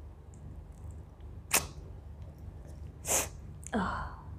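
A woman sneezing twice, short and sharp, about a second and a half apart, set off by black pepper she sniffed. A brief vocal sound follows near the end.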